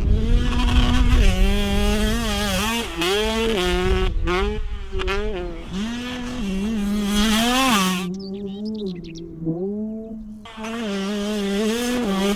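5-inch FPV racing quadcopter's motors and propellers whining, the pitch rising and falling with each throttle change, with wind rumbling on the mic over the first two seconds. Around eight seconds in the high whine drops away and the pitch sinks as the throttle is cut, then it climbs again about two and a half seconds later.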